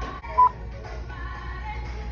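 A short, loud electronic beep about half a second in, edited in as a take-change sound effect, over steady background music.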